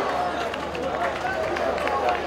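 Football stadium ambience: scattered shouts and voices of spectators and players over the steady noise of a small crowd.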